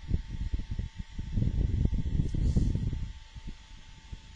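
Low, uneven rumbling and crackling noise, loudest in the middle and dying down near the end, with a faint steady tone above it.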